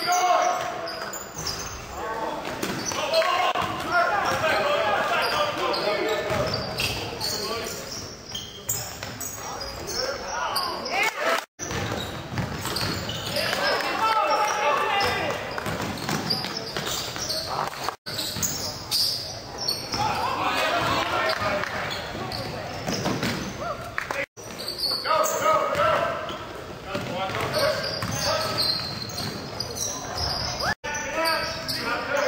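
Basketball game sound in an echoing gymnasium: crowd voices and cheering, with a basketball bouncing on the hardwood floor. The sound drops out for an instant three times where game clips are cut together.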